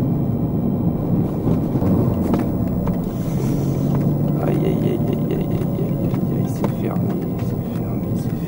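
Peugeot 206 RC's 2.0-litre four-cylinder engine running steadily on the move, heard from inside the cabin along with tyre and road noise. Its note dips briefly about three seconds in and then picks up again.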